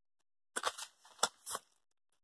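Paper pages of a handmade notebook insert being handled and turned: a few short, crackly rustles about half a second in, in the middle, and again shortly after.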